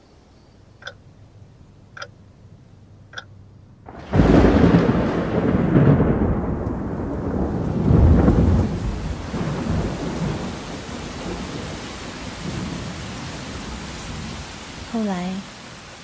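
Three faint clicks, then a sudden clap of thunder about four seconds in, rumbling again a few seconds later with heavy rain, easing into a steady rain hiss.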